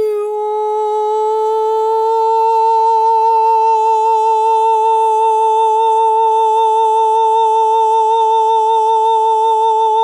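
A woman's voice holding one long wordless note with a light, even vibrato, as a channelled healing-voice tone.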